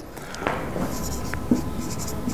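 Someone writing by hand, the writing tool scratching continuously across the surface.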